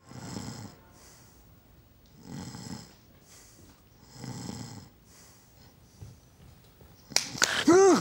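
A man snoring in slow, heavy breaths about every two seconds. Near the end a loud burst of laughter breaks in.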